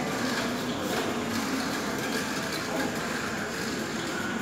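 Tamiya Mini 4WD car running around its plastic track, a steady whirring rattle, over the even background noise of a large indoor hall.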